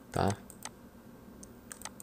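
A few faint, sparse computer clicks, with a short spoken word at the start.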